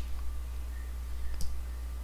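Steady low hum on the recording, with two faint short clicks, one about a quarter second in and one about a second and a half in.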